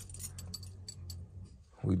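Faint steady low hum with a few light metallic clicks from a box Chevy Caprice's dashboard area as power reaches its electrics on a weak, freshly fitted battery.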